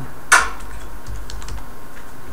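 Typing on a computer keyboard: one sharp, louder keystroke about a third of a second in, then a few light key taps.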